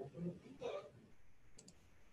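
Two quick computer mouse clicks about a second and a half in, over faint murmured speech early on.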